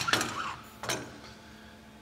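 Metal clinks of a McDonnell Miller low-water cutoff float head assembly being handled and set on boiler piping: a sharp clink at the start, then a softer knock about a second in.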